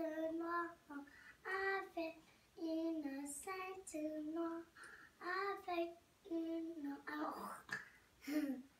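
A young boy singing a song unaccompanied, in short phrases of held notes with brief pauses between them.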